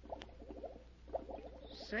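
Radio sound effect of bubbling in water, a run of small irregular pops: metallic sodium reacting with water and giving off hydrogen gas. Heard on an old broadcast recording with a low steady hum.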